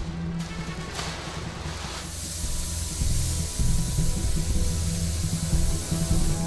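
Spray gun hissing as it sprays a final coat of varnish, growing louder and steadier from about two seconds in, over background music.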